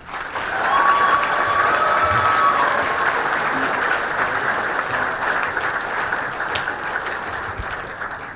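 Audience applauding, swelling up within the first half second and easing off slightly near the end. A single drawn-out high call rises over the clapping from about a second in.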